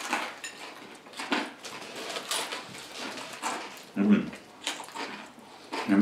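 Two people chewing and biting pizza close to the microphone, with scattered wet mouth clicks and crust crunches, and a short hummed "mm" about four seconds in.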